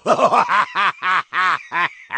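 Laughter: a run of short, evenly spaced 'ha' bursts, about three a second.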